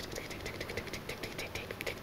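Rapid, faint clicking, about ten clicks a second, fairly even.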